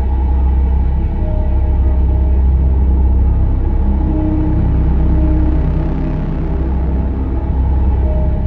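Dark, droning background music: a deep, steady low rumble with long held notes that fade in and out.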